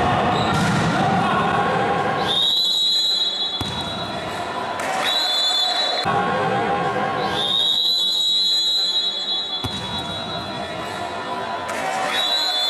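A shrill, steady whistle sounds four times, the longest about two seconds. Shouting voices echo in an indoor futsal hall, and there are two sharp knocks of a ball.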